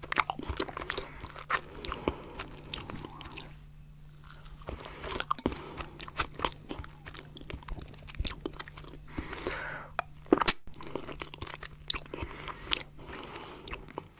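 Close-miked eating of stracciatella pudding mousse: wet mouth smacks and chewing, with many small sharp clicks and crunches from the chocolate flakes in the creamy mousse. A spoon is dipped into the glass bowl partway through, and the sharpest click comes near the end.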